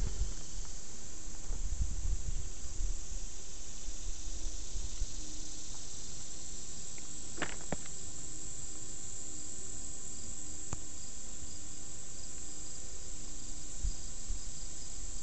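Insects trilling steadily, a continuous high-pitched sound, with low rumble on the microphone in the first few seconds and a couple of short clicks near the middle.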